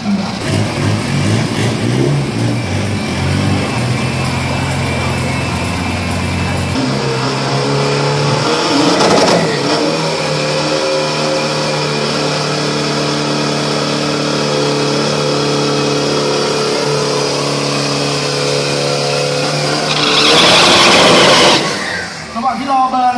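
Isuzu pickup drag truck's engine at the start line: uneven revving at first, then held at steady high revs for about thirteen seconds. Near the end it launches at full throttle with a loud blast of engine and wheelspin.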